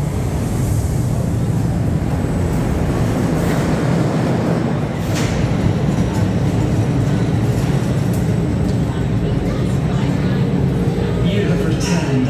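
Leviathan roller coaster train rolling through the loading station with a steady low rumble.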